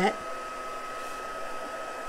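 Embossing heat tool (a small craft heat gun) running, a steady blowing hiss with a faint thin whine.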